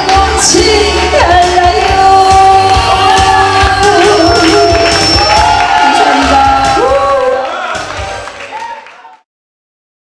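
A woman singing through a microphone over a loud amplified backing track. The music fades out over the last couple of seconds and ends about nine seconds in.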